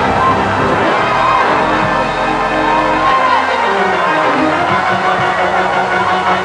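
Church music played loud and steady, with a congregation's voices rising over it.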